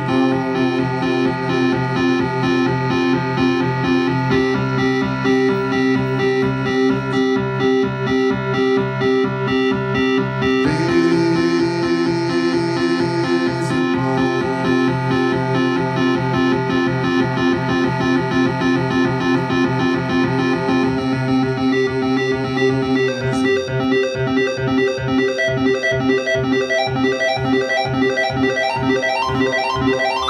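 Instrumental stretch of a live song with no singing: a synthesizer-like keyboard sound plays a repeating rhythmic pattern. The pattern changes about eleven seconds in and again past twenty seconds, and a rising sweep comes in near the end.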